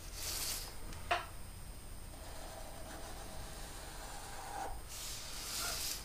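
Black permanent marker drawing a long straight line across paper: a faint rubbing, squeaky drag, with a light tap about a second in and a soft hiss at the start and near the end.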